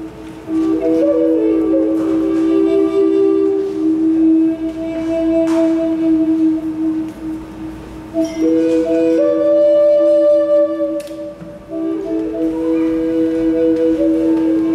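Harmonica played live into a microphone: long held notes and chords in slow phrases, with short breaks between phrases about eight and eleven and a half seconds in.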